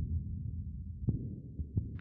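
A low, pulsing rumble with no clear pitch, with a few faint clicks over it: one at the start, one about a second in and one near the end.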